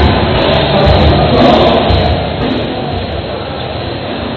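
Amplified music with a low bass beat, heard through the echo of a crowded mall hall over crowd noise. It drops in loudness about halfway through.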